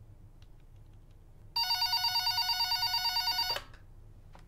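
An electronic telephone ringing: one warbling ring about two seconds long, starting about one and a half seconds in and cutting off sharply.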